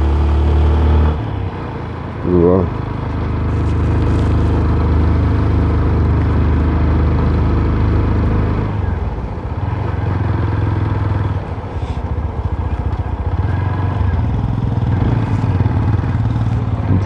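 TVS Apache RTR motorcycle's single-cylinder engine running at low road speed. Its note drops about a second in and picks up again a couple of seconds later.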